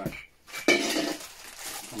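Funko Soda tin cans and plastic-bagged figures being handled on a tabletop. A sudden clatter of metal comes about two-thirds of a second in, then fades into softer handling noise.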